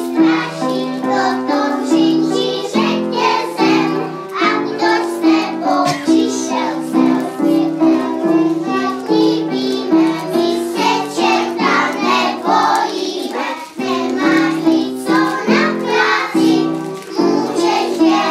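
A group of young children singing a song together over music accompaniment.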